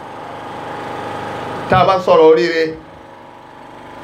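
A man's voice amplified through a handheld microphone and loudspeakers, one short spoken phrase about two seconds in, over a steady background hum that fills the pauses.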